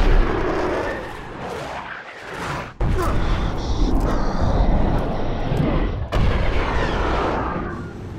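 Fighter jet engines roaring during low-level flight, with a heavy rumble and rushing air. The roar sags about a second in, then comes back abruptly just before three seconds and jumps again about six seconds in.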